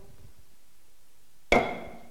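An auctioneer's gavel strikes the lectern once, sharply, with a short ringing after it: the hammer fall that closes the bidding and knocks the lot down as sold. Quiet room tone comes before it.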